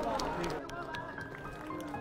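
Soft background music with long held tones; the tail of audience applause thins out in the first half second, under faint voices.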